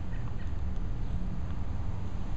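Low, steady rumble of wind buffeting the microphone.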